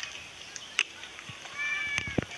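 A cheetah giving one steady, high-pitched chirping call of about half a second near the end. A sharp click comes a little under a second in.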